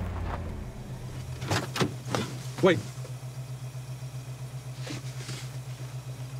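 Car engine idling: a low, steady hum with an even pulse. A few sharp clicks come about a second and a half in.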